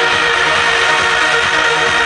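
Trance music played over a club sound system, with a steady kick drum a little over twice a second under sustained synth chords.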